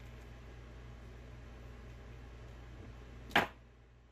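A single short, sharp snap a little over three seconds in, from the 0.036-inch retainer wire and the bending pliers as the freshly bent loop is handled against the plaster model. It sits over a steady low hum.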